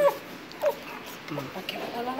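A few short wordless voice sounds, each a brief call falling in pitch: the first right at the start, the others about two-thirds of a second in and near the middle.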